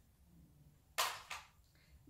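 Brief handling noise of a makeup palette being picked up from a table: a short scrape about a second in, then a fainter one.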